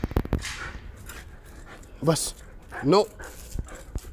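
A dog tugging on a rope leash held in its jaws, giving two short whines that rise sharply in pitch, about two and three seconds in.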